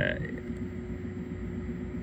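A hesitant spoken "uh" trails off at the start, then a steady low hum carries on, typical of a desktop PC's cooling fans with its CPU at about half load.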